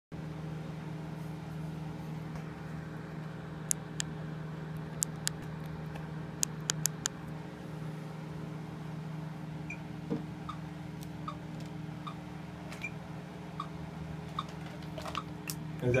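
Steady electrical hum from the band's gear, with a few sharp clicks in the first half and faint, evenly spaced ticks a little under a second apart in the second half.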